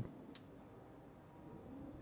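Near silence: faint room tone, with one small click about a third of a second in.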